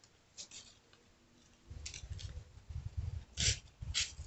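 Footsteps on a concrete path and handling bumps from a handheld camera being moved. It is quiet at first with a few light clicks, then irregular low thumps set in with a sharp scuff near the end.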